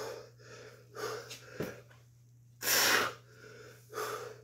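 A man breathing hard through the mouth while rowing a kettlebell, with short breaths out and one loud, forceful exhale about three seconds in.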